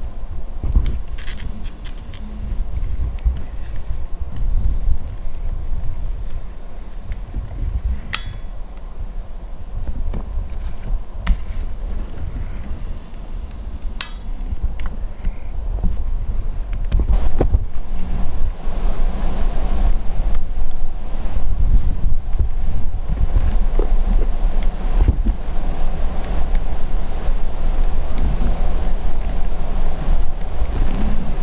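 Wind buffeting the microphone with a low, uneven rumble that grows stronger in the second half. A couple of sharp clicks stand out partway through.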